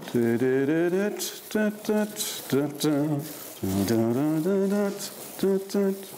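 A man humming a waltz tune in three-quarter time without words: long held notes alternate with short groups of quick repeated notes.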